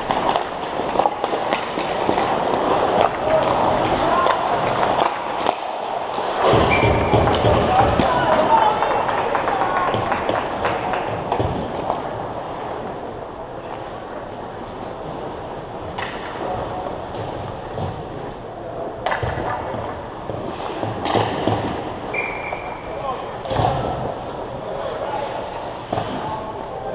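Ice hockey game in an echoing rink: indistinct shouts and voices of players and spectators, with sharp clacks of sticks and puck against the ice and boards scattered through, several of them in the second half.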